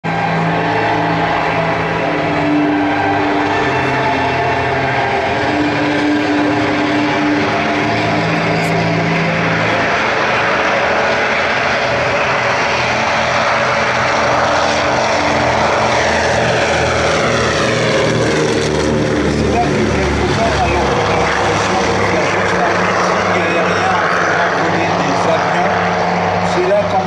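Consolidated PBY Catalina's two Pratt & Whitney R-1830 Twin Wasp radial engines and propellers running steadily as the amphibian takes off and passes close by. The engine note drops in pitch from about fifteen seconds in as the aircraft goes past and climbs away.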